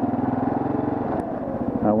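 Kawasaki KLR650's single-cylinder four-stroke engine running at low speed with a steady, pulsing note that eases slightly about halfway through.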